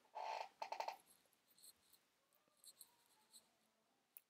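Near silence: room tone, with a brief faint scrape or rustle in the first second.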